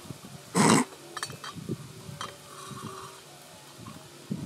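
Cooked spaghetti and vegetables sliding out of a pan onto a metal plate, pushed along by a spatula: one loud slopping scrape about half a second in, then a few light clicks of the spatula on the pan.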